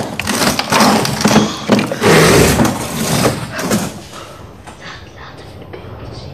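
Loud rustling and handling noise close to a phone's microphone as it is set down, with hushed voices, dropping to quieter room sound about four seconds in.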